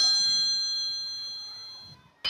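A bell-like chime ringing out in a few clear, high, steady tones and fading steadily over about two seconds before cutting off. It is the time-up signal that ends the thinking time for the quiz question.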